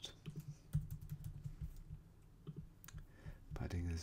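Computer keyboard typing: a short run of separate key clicks as a word is typed into a text box.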